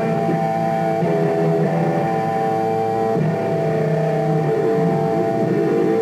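Electric guitar played through an amplifier: held, ringing chords, with a few notes bending in pitch in the second half.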